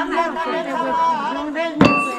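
A voice singing a drawn-out chant, then near the end a single loud ringing metallic strike.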